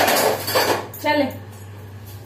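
Metal kitchen utensils and dishes clattering: a loud jangle for most of the first second, then a shorter clank just after the midpoint.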